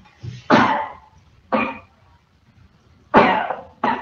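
A person coughing four times in short bursts, heard through a voice-chat microphone.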